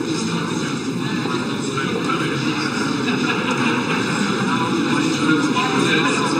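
Crowd babble: many people talking at once, a steady mixed chatter with no single voice standing out.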